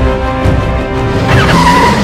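Action soundtrack music plays throughout. Near the end a tyre skid-screech sound effect rises quickly and holds as a high squeal for about half a second, for the toy motorbike.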